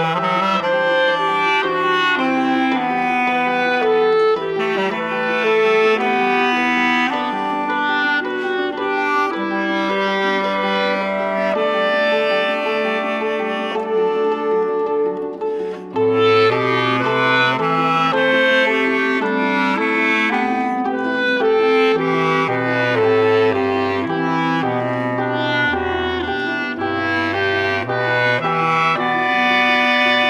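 Clarinet and bass clarinet playing a slow classical duet in sustained, overlapping melodic lines. About halfway through there is a brief lull, after which the bass line moves into lower notes.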